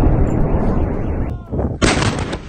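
Explosions and shelling rumbling heavily, easing off about a second and a half in, then one sudden loud blast near the end.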